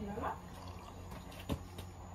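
Faint sip of cola from a small cup, with a single sharp click about one and a half seconds in.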